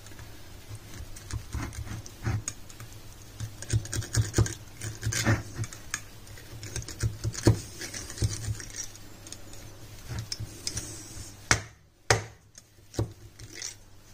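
Metal knife poking and scraping inside a glass jar of oil-packed sun-dried tomatoes, irregular clicks and scratches against the glass as the tomatoes are pressed down to push out trapped air. A faint steady low hum lies underneath.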